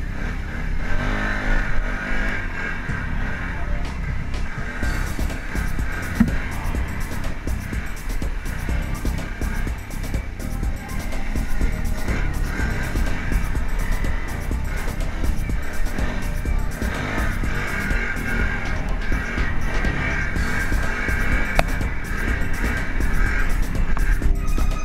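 Quad (ATV) engine running and revving hard under load as the machine drives through mud, with music playing over it.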